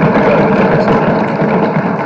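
Assembly members applauding by thumping their desks, a dense and steady clatter of many hands.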